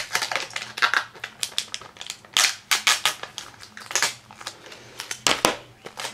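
Adhesive tape being picked and peeled off the top edge of a plastic Blu-ray case: an irregular run of quick, scratchy crackles and clicks.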